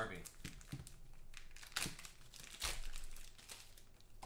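Black plastic wrapper on a sports-card pack crinkling and crackling in irregular rustles as it is handled and unwrapped by hand.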